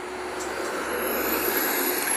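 A road vehicle going by: a steady rushing noise that slowly grows louder, with a faint high whine over it.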